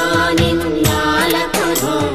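Devotional music: a chanted, sung hymn over a sustained drone, with repeated percussion strikes.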